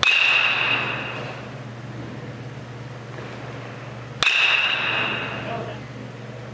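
Two hits of a baseball with a metal bat, one right at the start and one about four seconds in, each a sharp ping followed by a ringing tone that fades over about a second and a half.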